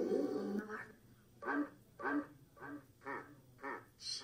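Spiritus ghost-box app sweeping, playing a string of short chopped voice-like blips, about five of them roughly half a second apart with quiet gaps between.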